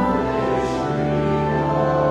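Church hymn: voices singing over sustained organ chords, the chords changing about once a second.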